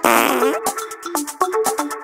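A loud fart sound effect lasting about half a second, with a pitch that sags and rises again, then the electronic backing track of short, bright synth notes carries on alone.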